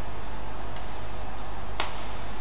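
Badminton racket strikes on a shuttlecock during a rally: a faint hit a little under a second in, then a sharp, loud hit near the end, over steady arena background noise.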